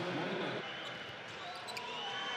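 Basketball arena ambience: a steady crowd hum with a few faint, short squeaks and light knocks from play on the court.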